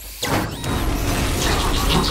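Sound-designed robot movement: mechanical clicking, ratcheting and clanking of robot joints and gears over a low rumble. It starts about a quarter second in after a brief lull.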